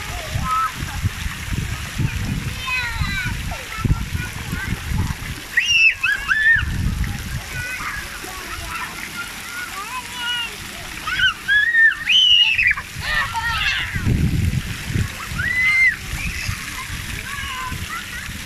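Water splashing and spraying on a splash pad as children kick and wade through it, with children's high voices shouting over it, loudest about six seconds in and again around eleven to thirteen seconds in.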